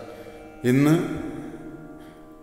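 A man speaking: one short spoken phrase about half a second in, between pauses.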